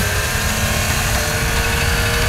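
Drum and bass music from a DJ mix: held synth notes over a dense, rumbling bass and drum low end.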